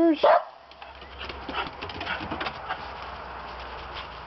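A small shaggy terrier-type dog barks once, loud and short, right at the start, then fainter, scattered sounds follow as it runs off across the yard.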